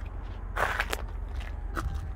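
Footsteps on a pontoon boat's deck: a scuffing step about half a second in and a lighter one near the end, over a steady low rumble.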